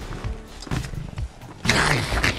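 A monster-like roar from a horror film scene, loud and falling in pitch, comes in about one and a half seconds in, over film score music with low hits.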